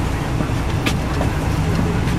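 Cabin noise of a 2002 MCI D4000 coach bus under way, heard from a passenger seat: a steady low engine drone and road noise, with a brief sharp click about a second in.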